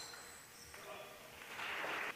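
Table tennis ball being struck at the close of a rally, with a sharp click at the start, then a louder noisy burst of about half a second near the end.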